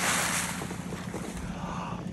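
Rushing wind on the microphone high above the lake, a little stronger for the first half second and then steady.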